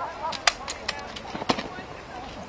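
A rapid series of sharp knocks and slaps, hands striking rifles during the present-arms drill movement: about five clicks within the first second and a half, the loudest about half a second in and again near the end.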